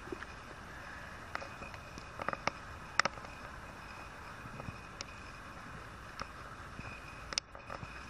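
Quiet outdoor background with a low steady hiss and faint high steady tones, broken by a few short, sharp clicks scattered through it, the loudest about three seconds in.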